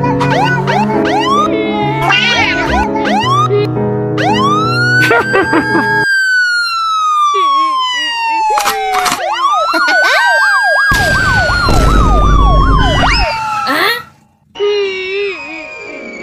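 Meme soundtrack: a bouncy music loop with many short sliding notes, then a police siren sound effect. The siren wails in two long glides, each rising and then slowly falling, the second with a fast warbling yelp over it. It cuts out briefly near the end, and a high wavering cry follows.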